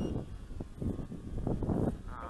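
Wind buffeting the microphone in uneven gusts, a low rushing noise that swells and drops.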